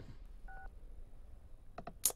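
A single short electronic beep from a mobile phone about half a second in, then a few faint clicks near the end over low room tone.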